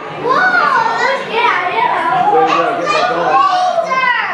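Several children's voices calling and shouting over one another, high-pitched and excited, with no single clear speaker.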